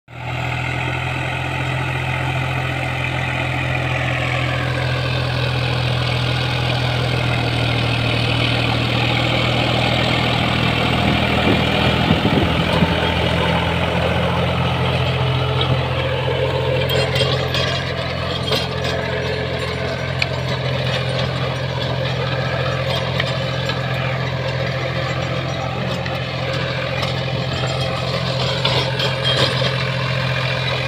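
New Holland 4WD tractor's diesel engine running steadily under load while pulling a Shaktimaan rotavator through the soil, with the churning of the rotavator. Sharp light clicks come in during the second half, as the tractor works close by.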